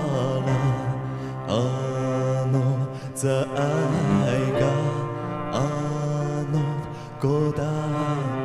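A male lead singer sings a slow song in Amis, accompanied by a small live band of bowed cello, keyboard and cajón.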